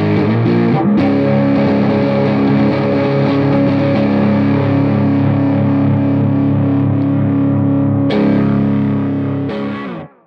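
Electric guitar with humbucker pickups, overdriven through a Wounded Paw Audio Bighorn Overdrive pedal: a few quick notes, then a full chord struck about a second in and left to ring. It is struck twice more near the end and fades out.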